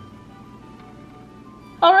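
Faint background music with a few held notes under a pause in speech; a woman's voice starts again near the end.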